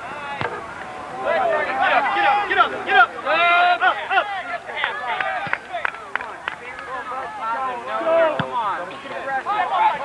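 Many voices shouting and calling over one another across an outdoor soccer field, with a few sharp knocks in between.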